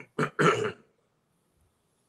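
A man clearing his throat, two quick rasping bursts within the first second.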